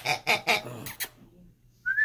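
A dog's sounds: a few short noisy bursts in the first second, then a brief rising high squeal near the end.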